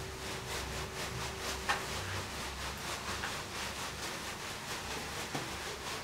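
Leafy bath brooms (veniks) swishing and patting over a person's body in a quick, even rhythm of soft strokes, leaves rustling, as two steamers work in step.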